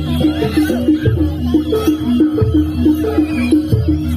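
Loud jaranan (jaran dor) dance accompaniment from a live ensemble: a fast, repeating melody of short stepped notes over a steady low bass and regular drum strokes.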